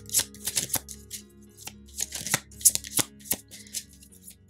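Tarot cards being handled, a quick irregular run of sharp snaps and flicks, over soft background music with held tones.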